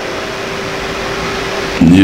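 Steady background hiss with a faint steady hum in a pause between a man's speech; his voice comes back near the end.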